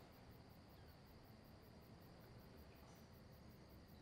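Near silence: faint room tone with a faint steady high hum.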